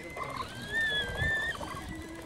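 A single high whistling call, about a second long, wavering slightly in pitch and cutting off suddenly, over low rustling.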